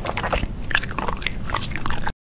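Close-miked mouth sounds of someone biting and chewing jelly candy, a dense run of irregular wet clicks and crackles.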